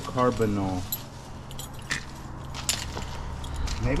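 Metal belt buckles clinking and jangling as a bundle of belts is handled, in a scattered run of light clinks.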